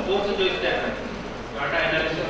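A man speaking into a microphone, talking in phrases with short breaks.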